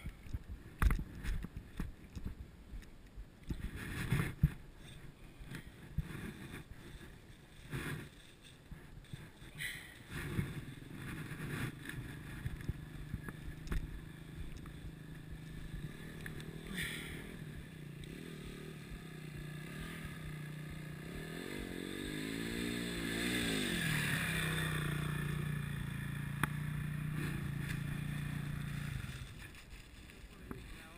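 Dirt bike engine running at low, steady revs on a muddy trail, with knocks and thumps of the bike jolting over rough ground in the first part. About two-thirds of the way through, the revs rise and fall, then hold louder and higher before dropping back near the end.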